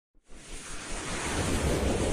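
A swelling rush of noise, the whoosh sound effect of an animated news logo intro, starting just after the beginning and building steadily in loudness.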